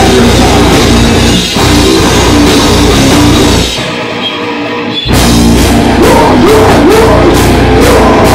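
Live heavy metal band playing loud: distorted electric guitars, bass and a drum kit, with a vocalist screaming. About four seconds in the band cuts out for about a second, then crashes back in.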